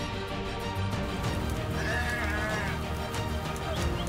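Background music, with a sheep bleating once about two seconds in, a call of nearly a second, and a shorter bleat near the end.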